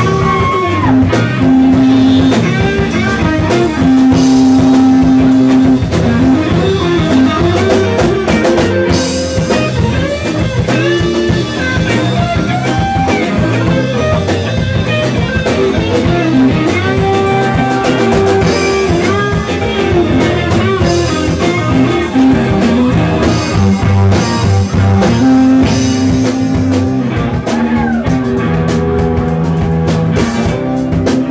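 Live funk-rock band playing an instrumental passage: guitar lead lines with held and bending notes over bass and drum kit with cymbals.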